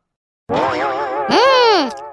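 Comic cartoon sound effect: a wavering pitched tone that starts about half a second in, then glides up and back down in pitch and fades just before the end.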